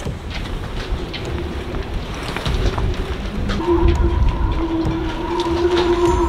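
Strong gusting wind buffeting the microphone with a heavy, uneven rumble. A steady whistling tone joins a little over halfway through and holds, typical of wind in a sailboat's rigging.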